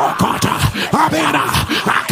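A man praying aloud in tongues: rapid strings of syllables, with pitch sweeping up and down.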